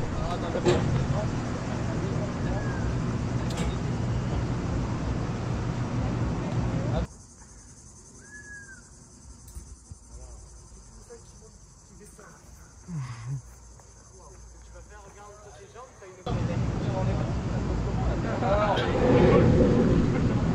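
Wind rushing over an action camera's microphone, with a low rumble underneath. In the middle it drops for about nine seconds to quiet outdoor ambience with one short whistle-like call and a brief low call, then the wind rush comes back, with faint voices near the end.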